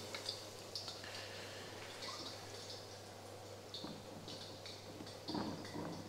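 Floured and egg-coated pork escalopes frying in hot oil in a pan: a faint sizzle with scattered small crackles and spits.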